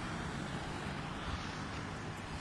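Steady background noise of street traffic, cars passing on the road.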